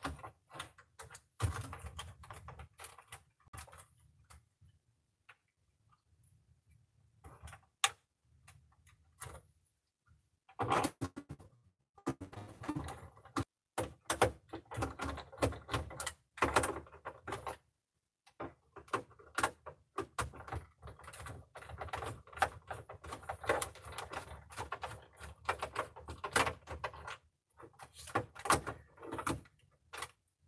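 Hand screwdriver turning screws out of the plastic back of a computer monitor, with scattered clicks, scrapes and knocks from handling the monitor. There is a quiet stretch about four to seven seconds in.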